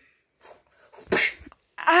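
A short, sharp breath-like burst of noise about a second in, with a fainter one just before it.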